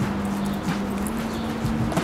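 Footsteps on asphalt, a few faint irregular steps, over a steady low hum.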